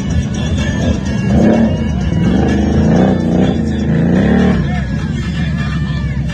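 ATV engine revving in repeated rising and falling surges from about a second and a half in until near the five-second mark, with the quad bogged down in deep mud. Music plays underneath.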